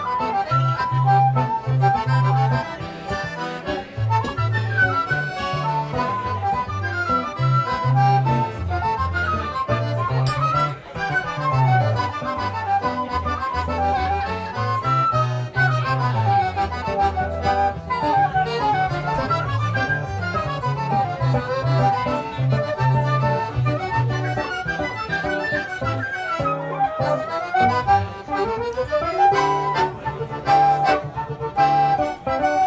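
Choro played by a flute, accordion and classical guitar trio: quick melodic runs rising and falling over a moving bass line.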